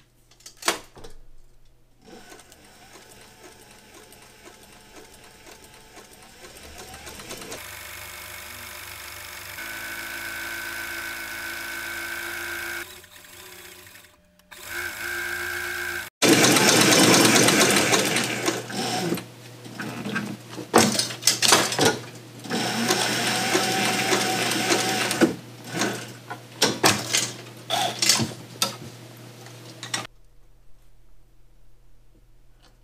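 Cobra Class 4 cylinder-arm leather sewing machine stitching a liner onto a leather belt: a few clicks, a steady hum, a short stop, then a louder run of rapid stitching clicks with brief pauses over the second half.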